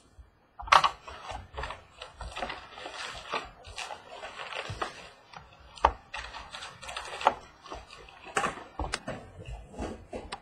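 A cardboard trading-card box being opened and its foil packs handled: crackly rustling and crinkling with many sharp taps and clicks, the loudest about a second in and near six seconds.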